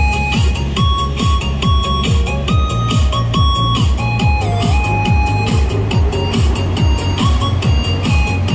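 Instrumental break of a Chinese pop song's backing track: a steady quick electronic dance beat with a stepping synth melody, no voice singing.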